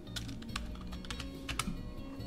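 A few sharp clicks of computer keyboard typing, bunched in quick pairs, over background music with guitar.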